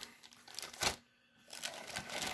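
Clear plastic kit bag crinkling as it is handled over the model kit's sprues, in short rustles with a sharp crackle a little under a second in.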